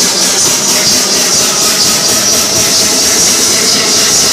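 Loud dance music with crowd noise in a packed room, overloading the recording into a dense, hiss-heavy wash with a faint steady beat.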